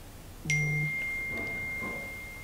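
A single ding about half a second in, ringing on at one high pitch and slowly fading over the next two seconds.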